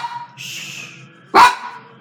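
A dog barks once, a short loud bark about one and a half seconds in, just after the tail of a previous bark.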